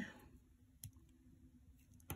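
Near silence: room tone, with one short faint click a little under a second in.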